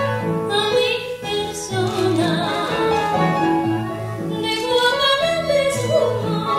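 A woman singing a stage song with strong vibrato over an instrumental accompaniment with a repeating bass line.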